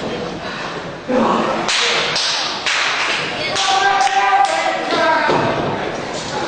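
A string of sharp thuds and slaps in a wrestling ring, with crowd voices shouting through the middle.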